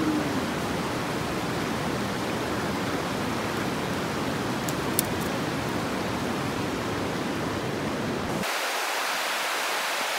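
Steady rushing of a river. One sharp click comes about halfway through, and near the end the deeper part of the rush drops away suddenly.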